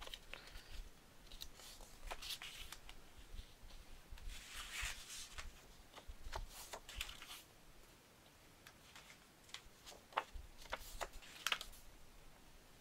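Kraft cardstock flaps being folded along their score lines, creased with a bone folder and shuffled together: faint paper rustling, sliding and light taps, with louder scrapes about four seconds in, around seven seconds and near the end.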